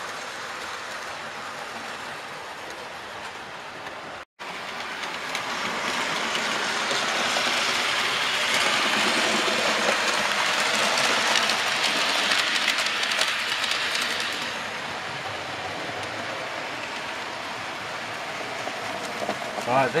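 Model trains running on a layout's track, a steady rolling rattle. It grows louder from about six seconds in as a locomotive and its train pass close by, and eases back after about fourteen seconds. The sound cuts out for an instant about four seconds in.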